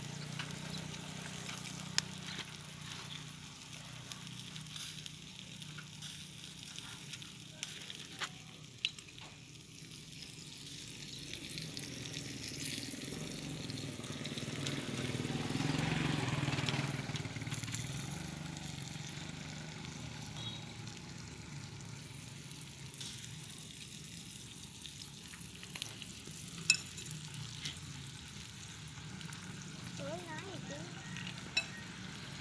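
Hairy cockles grilling in their shells on a wire rack over charcoal, sizzling steadily as scallion oil is spooned onto them. The sizzle grows louder about halfway through, with a few sharp clicks.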